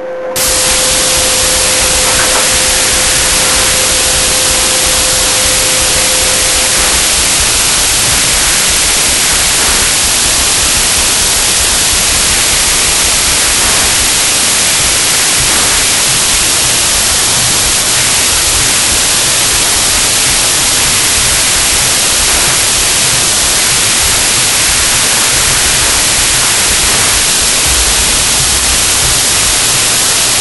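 Steady, loud hiss of a hydrogen-oxygen (HHO) torch flame held against concrete to engrave it. The hiss starts abruptly just after the beginning and stays even throughout.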